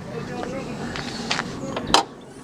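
A few light clicks at the front of a car bonnet, then a sharp metallic click near the end as the bonnet's safety catch is released and the bonnet is lifted. A steady background noise runs underneath.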